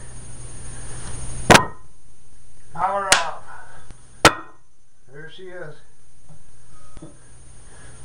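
Three sharp clicks, the loudest about a second and a half in, as a homemade battery-powered electromagnet lets go of a cast-iron barbell plate. They are typical of the quick pop of interference that the magnet breaking contact with the weight puts on the camera's audio, which sounds like a real quick fart. Short wordless voice sounds come between the clicks.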